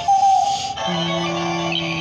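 Gemmy animated Halloween plush toy playing its built-in electronic tune through a small speaker: a short bright phrase, then a low note held through the second second.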